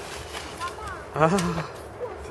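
A man's short spoken "A" about a second in, over low, steady outdoor background noise.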